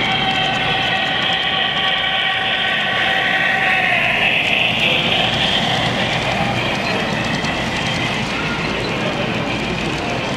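Large-scale model steam locomotive's sound system blowing a long steam whistle as it passes, the pitch dropping slightly about four seconds in, over the running noise of the train.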